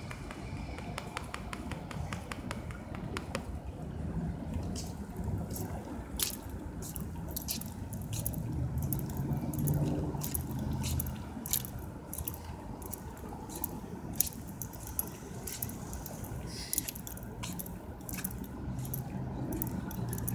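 Footsteps and handling noise from a cell phone carried while walking on a paved sidewalk: scattered short clicks and scuffs over a low, steady background hum that swells a little about halfway through.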